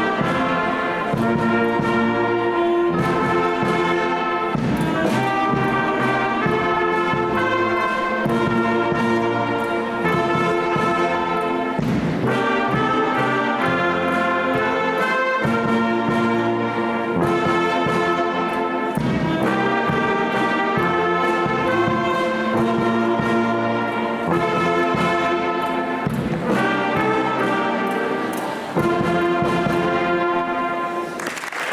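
Youth wind band of flutes, saxophones, trumpets and a sousaphone playing a piece together in full, sustained chords with percussion strokes. Near the end it drops briefly, then comes back in loud.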